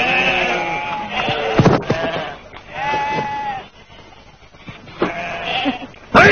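Sheep bleating: a long call at the start and another about three seconds in, with a thump about a second and a half in.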